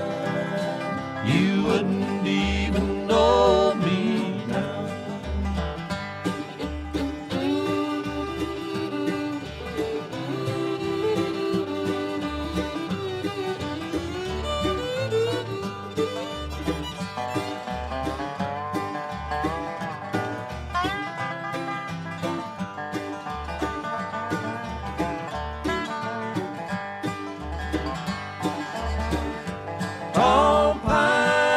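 Acoustic bluegrass band playing an instrumental break without singing: banjo, guitar and fiddle carry the melody over an upright bass keeping a steady beat.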